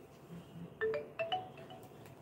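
A short electronic chime: a quick run of about five notes stepping upward in pitch, lasting about a second, like a phone alert or ringtone.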